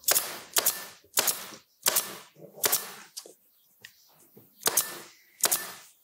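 Pneumatic staple gun firing about seven times in quick succession, each a sharp snap that trails off quickly, with a longer pause of over a second midway.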